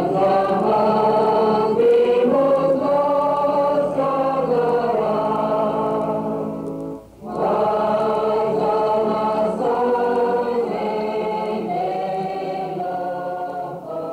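A choir singing in slow, held chords, with a short pause about halfway through.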